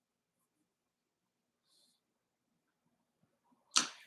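Near silence, then near the end one short, sharp intake of breath.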